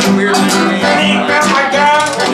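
Live Americana trio playing: a piano accordion holding chords over a strummed acoustic guitar, with a cowbell struck by a stick keeping a steady beat.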